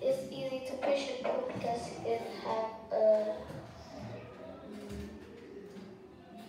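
Children's voices singing, with several held notes over the first three and a half seconds, then fainter for the rest.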